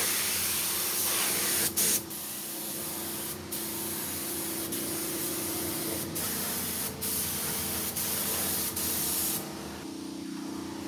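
Compressed-air gravity-feed spray gun hissing as it sprays paint onto a truck's sheet-metal panel, with several brief breaks. The spraying stops near the end.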